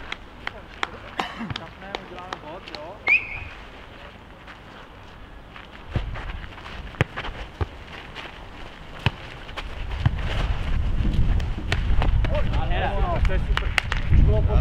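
Futnet ball thudding off players' feet and heads and bouncing on the hard court during a rally, a dozen or so sharp knocks at irregular intervals. Players' voices near the end, with wind rumbling on the microphone in the second half.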